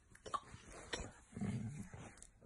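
A Vizsla on its back making a short, low vocal noise about halfway through, with a few sharp clicks before it.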